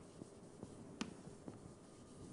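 Writing on a board: a few faint, short taps and scrapes of the writing stroke, with one sharper tap about a second in.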